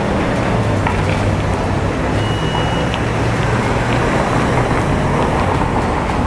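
Steady outdoor urban background noise with a low traffic-like rumble, and a brief thin high tone a little after two seconds in.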